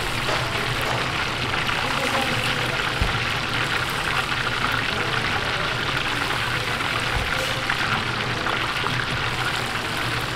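Battered chicken pieces deep-frying in wire fry baskets in hot oil: a steady, dense sizzle and crackle of vigorously bubbling oil.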